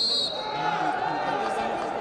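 A referee's whistle blown once, a short shrill blast right at the start, stopping the wrestling; voices in the hall carry on after it.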